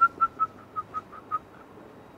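A man whistling a quick string of short high notes, about six a second, each a little lower in pitch than the last, stopping about a second and a half in.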